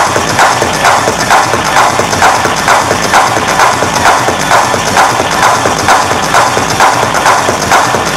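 Techno DJ set played loud over a club sound system, with a steady beat a little over twice a second.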